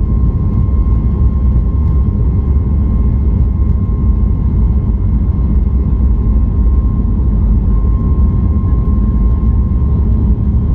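Cabin noise inside a Boeing 737-8200 MAX: a loud, steady low rumble of the CFM LEAP-1B jet engines and airflow, with a thin steady whine riding on top.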